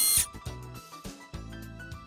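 Light background music with soft low pulses. A bright, high-pitched transition sound effect fades out a fraction of a second in, as the slide changes.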